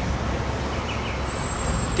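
Steady background traffic noise, an even low rumble with a faint hiss and no distinct events.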